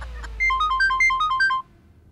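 Mobile phone ringtone: a short electronic melody of stepping beeps that plays for about a second, then stops.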